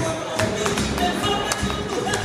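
Flamenco music playing, with several sharp taps from a flamenco dancer's shoes striking a hard floor in footwork.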